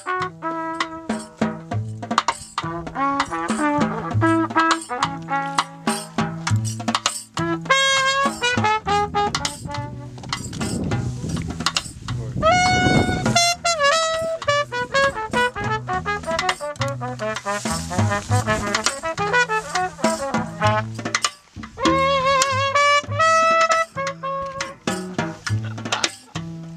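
Jazz trio playing: trumpet lines over plucked double bass notes, with snare drum and cymbal strokes. The trumpet holds one long note about halfway through.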